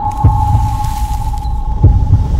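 Horror trailer sound design: a steady high drone held over a low rumble, with two deep, pounding thuds about a second and a half apart.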